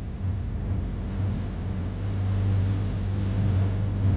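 A steady low hum over a steady hiss, unchanging in level, with no speech or sudden sounds.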